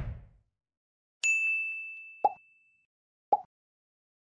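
Animated subscribe end-card sound effects: a whoosh fades out, then about a second in a bright bell-like ding rings for over a second. Two short pops follow, about a second apart.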